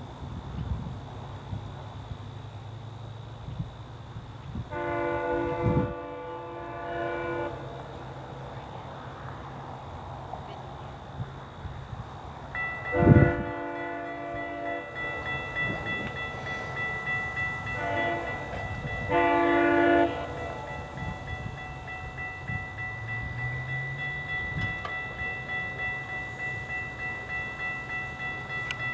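An approaching GO Transit diesel train sounds its horn four times: a long blast about five seconds in, another long blast around thirteen seconds, then a short and a long blast around eighteen to twenty seconds. A level-crossing warning bell starts ringing steadily at about twelve seconds and keeps going, over the low rumble of the oncoming locomotive.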